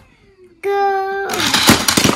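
Toy cars rattling down the plastic ramp track of a car-carrier case, a dense clatter of quick clicks starting just after a shouted "Go!".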